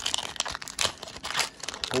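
Metallic plastic wrapper of a Pokémon trading card booster pack being torn open and crinkled by hand: a run of irregular sharp crackles.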